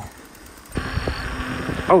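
Steady rush of wind and tyre noise from a bicycle riding along a paved road, coming in abruptly about three-quarters of a second in with a low rumble underneath.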